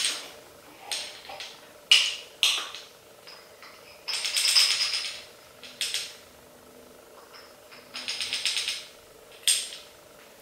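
Measuring spoons and a spice jar clinking in sharp, separate clicks as ground spice is measured out, with two short bursts of quick rattling, about four and eight seconds in.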